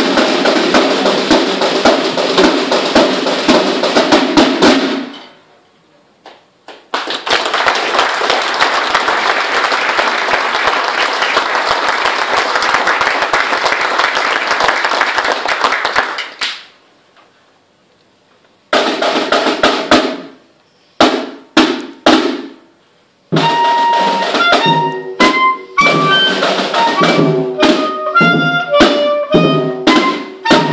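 Corps of drums playing: massed side and bass drumming for about five seconds, then a long unbroken rattle that stops suddenly, a few single drum strokes, and from about two-thirds of the way in a high woodwind melody of quick stepping notes over the drums.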